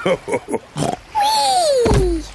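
Cartoon pig characters' snorting laughter, then a long falling whistle-like glide that ends in a low thump as two piglets land on the floating pig's belly.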